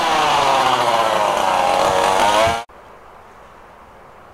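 Two-stroke chainsaw cutting branches, its engine pitch sagging under load and climbing again. It cuts off suddenly about two and a half seconds in, leaving only faint outdoor background.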